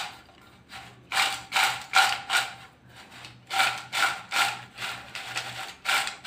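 Crisp fried potato chips tossed and shaken in a ceramic bowl to coat them with chilli powder, giving a dry, crunchy rattle. The shakes come about two or three a second in two runs, with a short pause between them.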